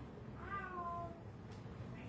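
A single short, high-pitched call that falls slightly in pitch, about half a second in, over faint background noise.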